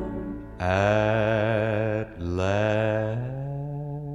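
Slow country gospel song: a singing voice holds two long notes with wide vibrato, the first starting about half a second in and the second just after two seconds, over a sustained low accompaniment.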